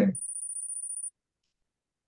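A high-pitched electronic chime from the Kahoot quiz game, played as the scoreboard comes up and the scores update. It lasts about a second and cuts off suddenly.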